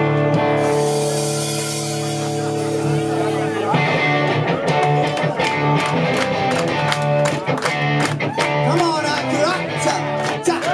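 Live rock band playing in a small room: guitars hold sustained chords for the first few seconds, then the full band comes in with regular drum hits about four seconds in.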